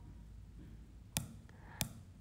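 Two short, sharp clicks, just over a second in and again near the end, over faint room noise.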